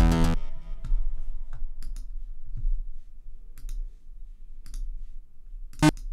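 A VPS Avenger synth sound cuts off and fades out in the first half-second, followed by a few faint computer mouse clicks. A short burst of a newly loaded sample plays just before the end.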